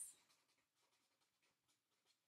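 Near silence, with the faint scratching of a marker writing on paper.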